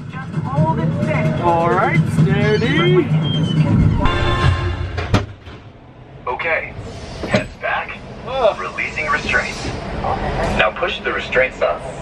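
Onboard audio inside a motion-simulator ride capsule. A steady low rumble runs under voices for about four seconds, then comes a buzzing tone and a sharp click, and after a short lull more voices follow.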